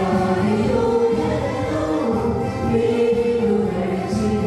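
A mixed group of young women and men singing a Telugu Christian song together in unison, their voices amplified through handheld microphones.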